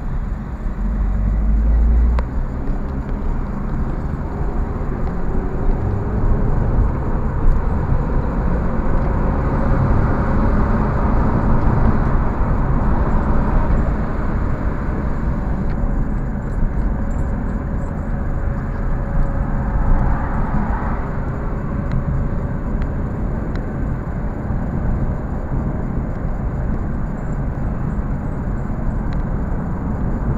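A car's engine and tyre road noise heard from inside the cabin while driving, with the engine note rising as the car gathers speed in the first half.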